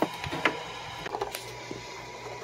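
Small plastic clicks and handling knocks as a modular cable plug is pushed into the Bass Level Control jack of an AudioControl LC2i line output converter: a sharp click at the start, another about half a second in, then a few lighter ticks.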